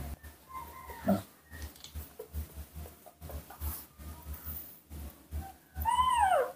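A baby macaque making faint short squeaks, then near the end a louder cry that falls steeply in pitch.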